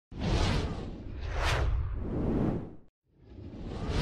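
Whoosh sound effects over a deep low rumble: a swell near the start, then a sweep rising to a peak and falling away about a second and a half in. It cuts off abruptly just before the three-second mark, and a fresh whoosh rises toward the end.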